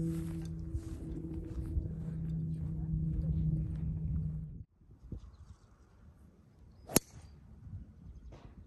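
A steady low hum with several held tones stops abruptly about four and a half seconds in. Then comes one sharp crack of a golf club striking a teed ball on a tee shot.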